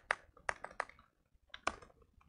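Computer keyboard typing: a scattered run of short key clicks, several in the first second and a couple more about a second and a half in, as text is deleted and typed.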